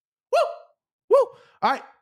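A voice making two short wordless vocal sounds about a second apart, each rising and falling in pitch, followed near the end by the start of speech.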